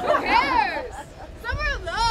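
High-pitched, dog-like vocal calls, each rising and then falling in pitch: two of them, with a third starting near the end.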